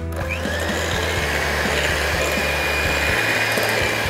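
Electric hand mixer running steadily at speed, its beaters whipping eggs and sugar in a glass bowl.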